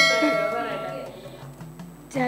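A bright bell-like chime, struck just before and ringing out, fading away over about a second and a half, over quiet backing music with a low repeating beat.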